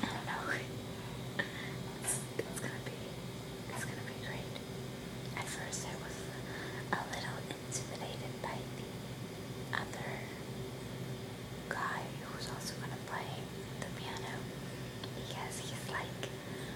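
A woman whispering close to the microphone, breathy syllables with sharp hissing consonants, over a steady low hum.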